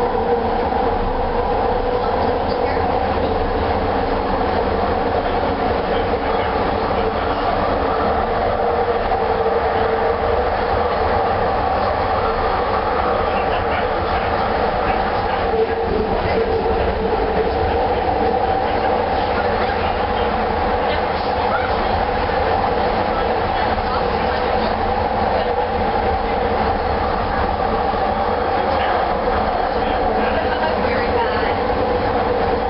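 Bombardier Mark II SkyTrain car, a linear-induction-motor rapid-transit train, running at steady speed on an elevated guideway, heard from inside the car. A constant-pitch electric hum sits over a steady running rumble, with no change in speed.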